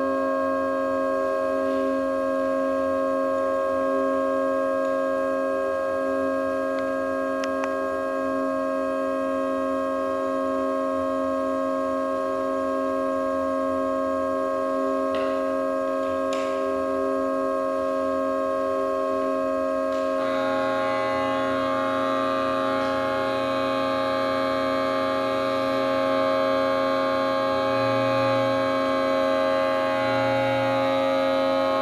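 Homemade organ of metal pipes fed with air through plastic tubes, holding a steady drone chord of several tones with a slow pulsing beat between them. A couple of light clicks come about halfway through as the pipes are handled. About two-thirds of the way in, more pipes join, adding a low tone and a cluster of higher ones.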